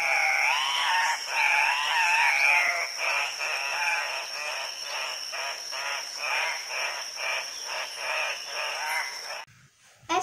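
Andean cock-of-the-rock calls: wavering, whining calls for the first three seconds, then a run of short repeated calls about two or three a second, over a steady high-pitched hum; the calls stop just before the end.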